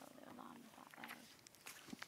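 Near silence: room tone with a few faint rustles and small clicks, like a book or binder being handled at a wooden lectern. The clicks are sharper toward the end.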